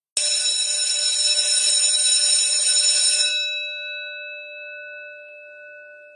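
A bell ringing steadily for about three seconds, then stopping, its tone fading out slowly over the next few seconds.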